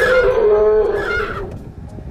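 A person's loud, drawn-out vocal sound that wavers in pitch, lasting about a second and a half before dying away.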